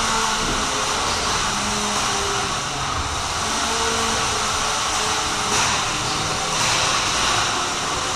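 Steady whirring, fan-like rushing noise that does not change, with faint voices underneath.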